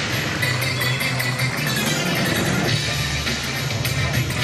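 Music accompanying the act, with a low bass line running under it.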